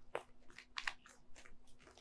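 A deck of tarot cards shuffled by hand: about five faint, crisp card snaps and slides at irregular intervals.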